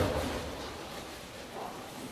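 A dull low thump at the start, fading over about half a second, then faint room noise with a brief faint voice about one and a half seconds in.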